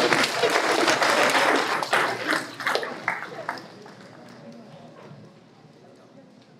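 Audience applauding, dense at first and then dying away about three and a half seconds in.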